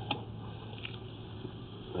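A low steady hum with background hiss and a faint click just after the start.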